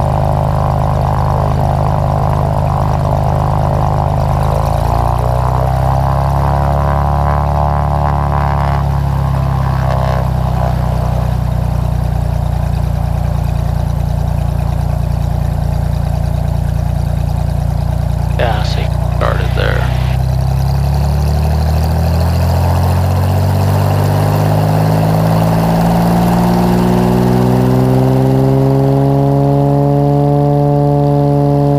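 Single-engine Cessna's piston engine and propeller heard from inside the cabin, running at low power, with one brief rise and fall in pitch a few seconds in. From about two-thirds of the way through, the engine climbs steadily in pitch as power is slowly brought up for takeoff.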